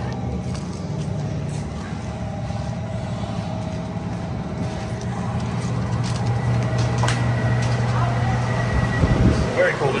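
A steady low hum with faint steady tones above it. It grows a little louder toward the end, where a person says a few words.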